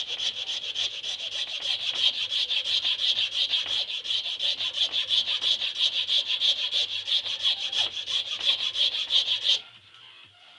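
Hand file scraping across a Burmese blackwood pistol-grip blank held in a vise, in rapid, even strokes of about five a second that stop abruptly near the end.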